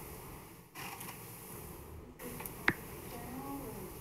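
Quiet room tone in a large meeting chamber, with one sharp click a little past the middle and a faint distant voice near the end. The background briefly drops out twice.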